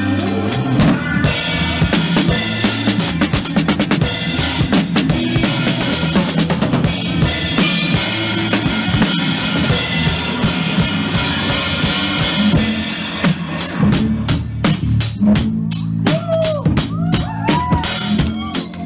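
Acoustic drum kit played live along with a pop backing track: dense kick, snare and cymbal strokes over a steady bass line. Near the end the playing breaks into a run of quick, evenly spaced sharp hits.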